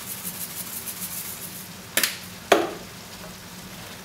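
A pan of tomato sauce with meatballs simmering with a soft, steady sizzle. Two sharp knocks come about half a second apart near the middle.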